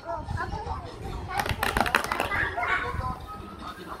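Faint cartoon dialogue and music from a television, with a quick patter of clicks about a second and a half in.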